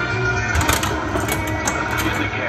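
Bally Who Dunnit pinball machine playing its game music through its cabinet speakers, with a few sharp mechanical clacks from the playfield about a third of the way in.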